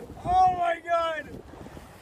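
Two drawn-out, high-pitched excited cries from a man's voice, over wind buffeting the microphone, then quieter for the second half.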